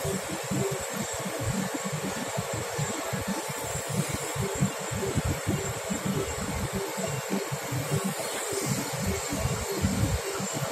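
Wind buffeting the phone's microphone in an irregular low flutter, over a steady rushing hum.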